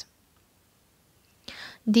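A pause in a woman's spoken reading: near silence for over a second, then a short breath, and her voice starts again near the end.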